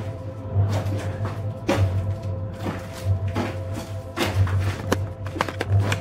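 Eerie background music: a low bass that pulses on and off, under a few held tones, with scattered sharp knocks or taps over it.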